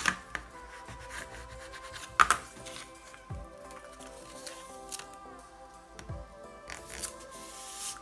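Background music with steady held notes, with a few short rustles and clicks of paper packing tape being handled and pressed onto a chipboard cover, the loudest about two seconds in.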